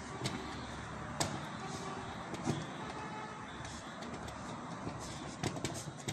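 Cloth rubbing on a CPU heatsink's copper base as old thermal paste is wiped off, with a few light clicks and knocks from handling the heatsink, a quick cluster of them near the end, over steady background noise.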